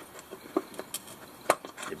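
A small screwdriver prying a plastic push-pin retaining clip out of a plastic wheel-arch liner: a few light clicks and ticks, the sharpest about a second and a half in, as the clip's inner pin unlocks and it pops free.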